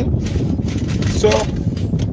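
Steady low rumble of a car, heard from inside the cabin, under a man's voice briefly saying a word.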